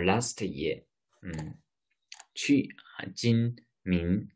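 A man's voice speaking in short phrases with brief pauses between them.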